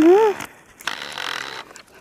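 A woman's short wordless call to a dog, rising then falling in pitch, then crunching on a gravel road as the dog trots along.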